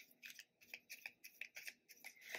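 Faint hand-shuffling of a tarot deck: soft, crisp card-on-card snaps about three or four times a second.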